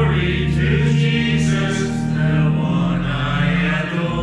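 A hymn sung by a group of voices, holding long notes with steady low notes beneath.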